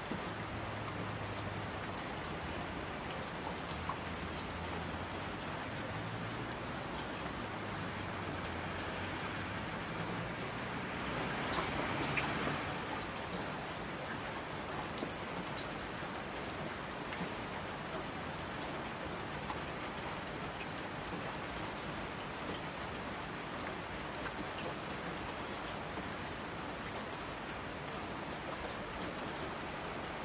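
Steady rain falling, with scattered individual drop ticks and a brief swell about twelve seconds in. A faint low rumble lies under it in the first half.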